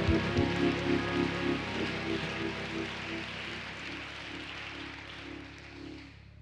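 Congregation applauding, the clapping fading away steadily over the few seconds, with music holding sustained chords underneath.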